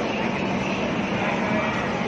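Rajdhani Express coaches rolling past close by, a steady rumble of wheels and running gear with a low hum underneath.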